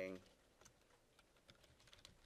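Faint typing on a computer keyboard: a scattering of light, irregularly spaced key clicks.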